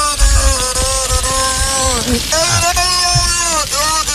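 A recording played on air of long, slowly wavering, voice-like wailing tones with a brief break about halfway through.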